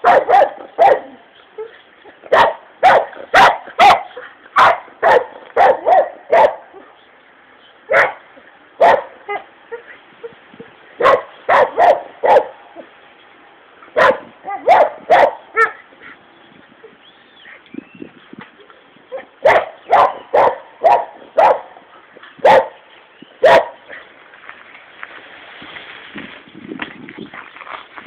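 A dog barking over and over, in quick runs of two to five sharp barks with short pauses between them and a lull of a few seconds about two-thirds of the way through.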